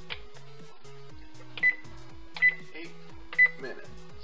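Oven control panel beeping three times, short high single-tone beeps as its keypad buttons are pressed, over background music.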